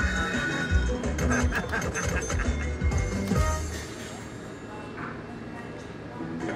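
Cops 'n' Robbers Big Money slot machine playing its bonus-round music and sound effects as the reels spin and land a win. The sound is busy with quick clicks for about the first four seconds, then quieter near the end.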